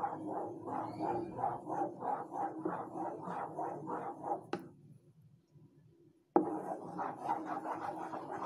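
Wooden-handled spatula stirring a thick, creamy gelatin mixture in a metal pot, scraping and swishing in quick, regular strokes of about four a second. The stirring drops out briefly just past the middle, then starts again abruptly.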